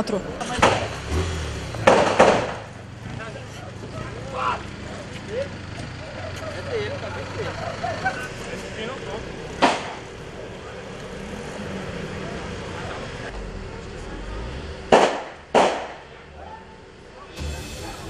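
Gunshots heard from outside a house during a police shootout: separate sharp cracks spread out, a couple near the start, one around the middle and two in quick succession near the end.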